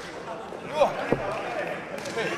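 Short shouted voices in the wrestling arena, with a single dull thud on the ring mat just after a second in.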